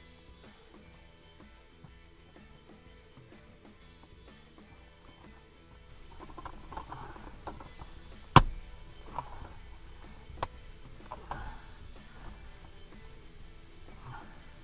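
Faint background music, with plastic rustling and knocking as a roof-vent fitting is pushed into its collar from below; two sharp clicks about two seconds apart in the second half, the first the loudest, as its clips snap into place.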